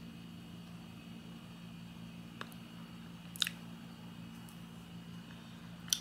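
Quiet room tone with a steady low hum, broken by two brief faint clicks about two and a half and three and a half seconds in, the second a little louder.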